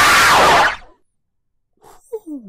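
Loud, distorted scream of a jump-scare clip that cuts off abruptly under a second in, followed by near silence.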